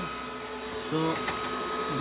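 Dragonmint T1 ASIC bitcoin miner's cooling fans running steadily at about 45% speed: a constant whir with a steady high-pitched tone.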